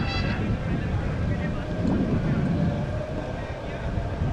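Background music that stops just after the start, giving way to a low, uneven rumble of wind on the microphone at an open-air ground, with indistinct voices under it.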